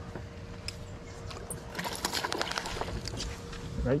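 A hooked fish being brought to the side of a boat: a quick flurry of sharp clicks and rattles about two seconds in, over a steady faint hum and low rumble.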